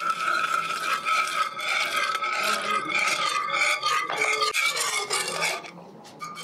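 Wire balloon whisk beating an egg mixture in a ceramic-lined saucepan, its wires scraping and clattering against the pot in quick, repeated strokes. The pot rings faintly under the strokes, and the whisking eases off near the end.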